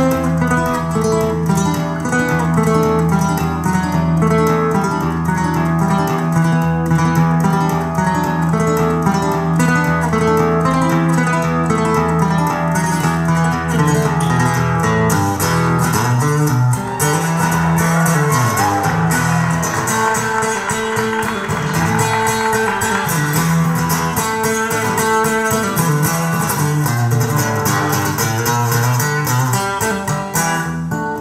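Recorded song playing through an Audiolab 8000SE amplifier and B&W loudspeakers: an instrumental passage of plucked guitar over bass and a steady beat, with no singing. The bass line starts moving about halfway through.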